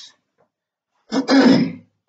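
A man clearing his throat: one loud, harsh burst lasting under a second, about a second in.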